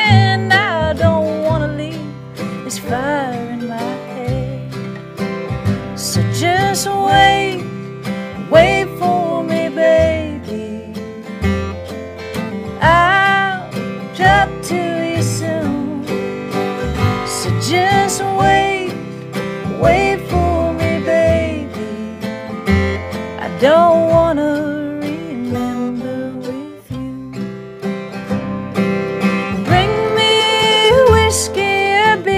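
A slow country song played on steel-string acoustic guitar with mandolin, and a voice singing over them.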